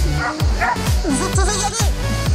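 Electronic dance music with a steady thumping beat, over which an Australian Shepherd barks and yips a few times.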